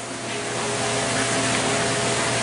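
Steady rushing background noise with a few faint held tones underneath, swelling a little over the first second.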